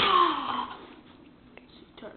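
A boy's breathy sigh, falling in pitch and fading out within the first second, followed by a single faint click about a second and a half in.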